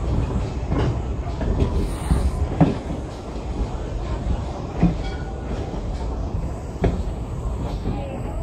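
Train rolling slowly over jointed track, heard from on board. There is a steady low rumble, and the wheels knock over the rail joints about every two seconds.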